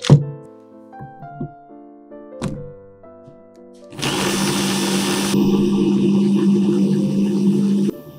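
A sharp thump just after the start, then an electric hand-blender chopper attachment starts about halfway through and runs steadily for about four seconds before cutting off suddenly. Background music plays underneath.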